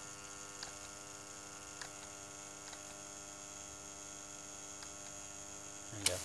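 Electric spindle motor driven by an IGBT at 100 Hz PWM, giving a steady electrical hum with many overtones as its duty is raised toward 10%. A few faint clicks come in the first few seconds.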